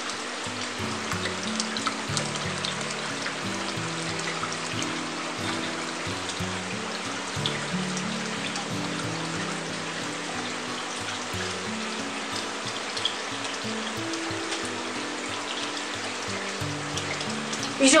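Background music of slow held notes over a steady trickle of water running down the rockwork of an aquaterrarium, fed by its pump and water splitter.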